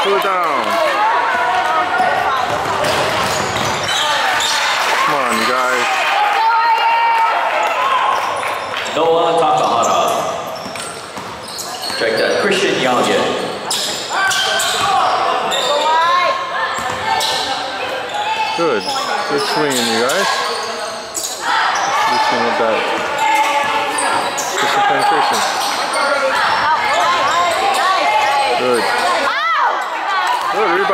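Basketball being dribbled on a hardwood gym floor, with sneakers squeaking as players cut and stop, and voices from players and spectators, echoing in the large gym.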